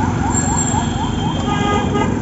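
Busy street traffic heard from a moving cycle rickshaw: a steady low rumble of engines and wheels, with a fast repeating rising electronic chirp, about five a second, that stops about a second in, and a vehicle horn sounding near the end.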